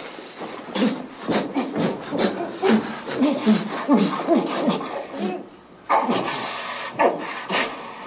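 A man groaning and grunting through clenched teeth on a rubber bite guard, in a rapid series of short strained cries, as an electroconvulsive shock convulses him. A steady hiss rises near the end.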